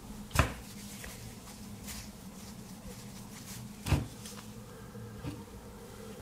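Two light knocks from hands handling a smartphone, about three and a half seconds apart, over a faint steady hum.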